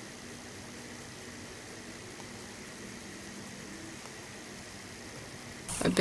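Steady low hiss of room tone with a faint, even hum under it; no distinct sound event.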